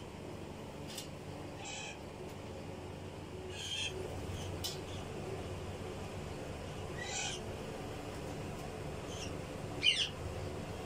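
Pigeons cooing in a low, steady murmur, with short high bird chirps every second or two and a sharper one near the end.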